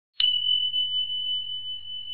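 A single high, bell-like ding: struck once just after the start, then ringing on as one steady tone that slowly fades.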